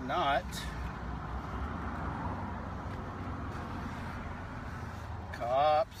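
A marker scratching across poster board as a sign is lettered, over a steady low rumble.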